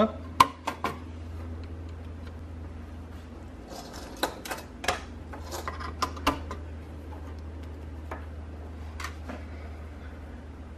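Plastic pluggable power terminal-block connectors being handled and pushed onto the circuit boards of two Rio Express G308 radio I/O modules. There are a few sharp clicks near the start, a cluster of clicks and clatter in the middle, and one more click near the end, over a steady low hum.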